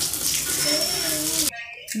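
Ghee sizzling on a hot tawa under a slice of batter-coated bread, a steady hiss that cuts off abruptly about one and a half seconds in.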